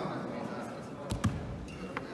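A single dull thump about a second in, over the chatter of spectators in a hall, with a sharp click near the end.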